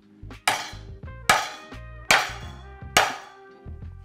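Four hard, evenly spaced whacks of a heavy chef's knife smashing tough lemongrass stalks against a wooden end-grain cutting board. The stalks are so hard they barely give. Background music plays underneath.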